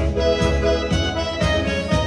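Accordion playing a tango melody in held, reedy notes over a backing band with a steady beat of about two strokes a second.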